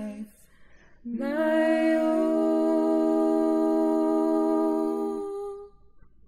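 Unaccompanied hymn singing. A phrase ends just after the start, and after a short breath one long final note is held for about four seconds before fading away.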